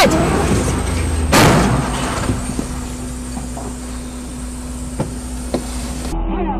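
Aftermath of a locomotive striking a truck at a level crossing: a loud crash about a second and a half in that fades away, over a steady low rumble with a faint hum. Two short clicks near the end.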